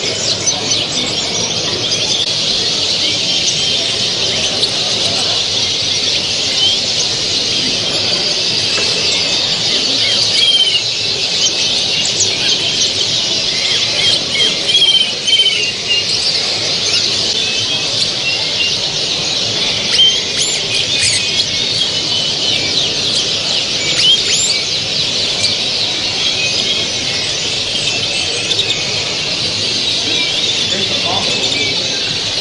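A hall full of caged show finches (goldfinches, canaries and their hybrids) singing together in a dense, continuous chorus of overlapping chirps and trills, over a low background murmur.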